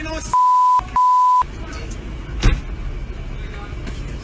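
Two censor bleeps in quick succession, each a steady 1 kHz tone about half a second long, in the first second and a half. A single sharp bang follows about a second later, over voices and street noise.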